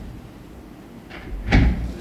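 A single dull knock with a rustle about one and a half seconds in, from a plastic water bottle being picked up off the table by the microphones.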